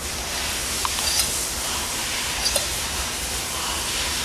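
Steady hiss of background noise, with a few faint light taps from hands handling the metal valve assembly.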